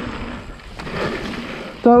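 Mountain-bike tyres rolling on a loose gravel trail, with wind on the action camera's microphone as a steady rushing noise; a man's voice starts just before the end.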